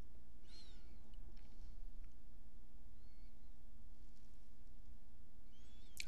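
Quiet room tone with a steady low hum, broken by a few faint, short high-pitched chirps: about half a second in, around three seconds, and near the end.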